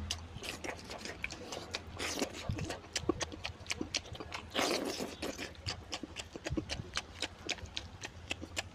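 Close-miked eating: chewing and lip-smacking on mutton curry and rice, a quick run of wet mouth clicks several times a second. There are two longer, noisier moments, about two seconds in and again near five seconds.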